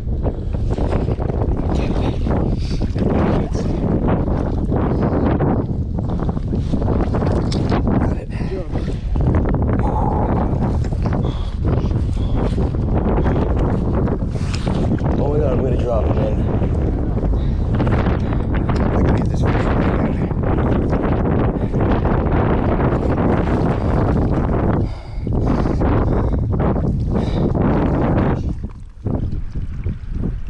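Wind buffeting the microphone: a loud, steady rumble with irregular gusts, dipping briefly twice near the end.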